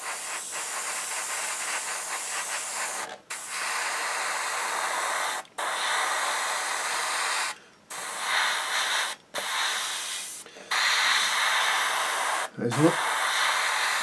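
Airbrush spraying ocean grey acrylic paint: a steady hiss of compressed air and atomised paint, cut off briefly about every two seconds as the trigger is released between passes.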